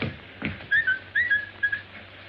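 Two dull thumps, then a person whistling a short phrase of a few quick notes, each sliding up at its start.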